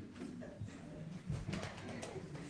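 Faint murmur of low voices in a hall, coming and going in short snatches.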